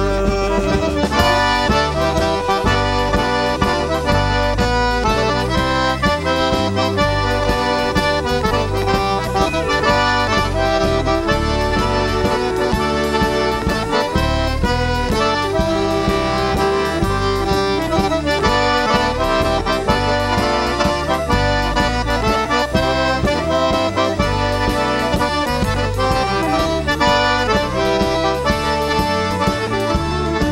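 Cajun button accordion playing a lively instrumental break of a Cajun dance tune, with a drum kit keeping a steady beat behind it.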